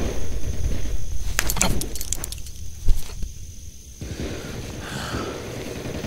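Quiet outdoor ambience: a low steady rumble with a few faint rustles and clicks, the sharpest one about three seconds in.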